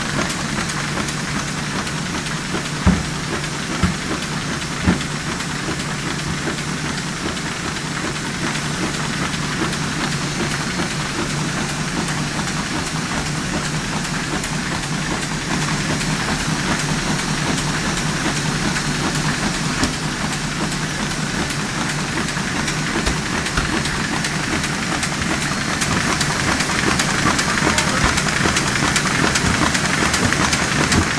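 Web printing press with folder running: a steady, loud mechanical clatter of rollers and folding gear with fast, even ticking, and a few sharp knocks about three to five seconds in. It grows louder toward the end.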